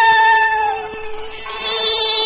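Cantonese opera song: a high female voice holds a long note that slides down just before the 1-second mark, then takes up a new note about halfway through, over a steady instrumental tone.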